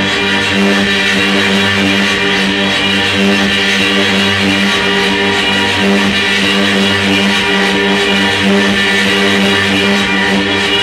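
Live improvised electronic noise music: a loud, unbroken drone of several held low tones layered under a dense hiss, with no beat or pauses.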